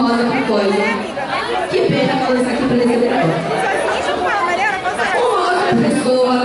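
Speech: a woman talking into a hand-held microphone in a large hall, with chatter around her.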